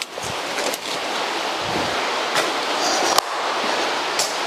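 Rain falling on the roof, a steady hiss, with a few sharp clicks and knocks, the loudest about three seconds in.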